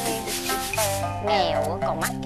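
Rice grains swishing and rustling in a round woven bamboo winnowing tray as it is shaken, over background music with sustained notes.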